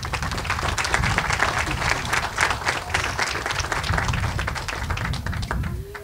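Audience applauding: many hands clapping together, dense and steady, tapering off just before the end.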